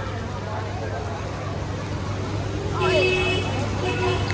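Road traffic on a wet street: a steady low engine hum under the hiss of tyres on wet tarmac. About three seconds in, a brief steady high tone sounds for under a second.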